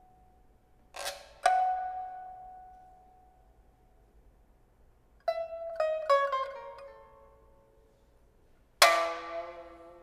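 Pipa playing sparse plucked notes that ring and fade slowly, with pauses between: a pair of notes about a second in, a quick run of notes around the middle, and a loud strummed chord near the end.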